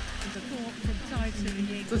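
Speech over background music.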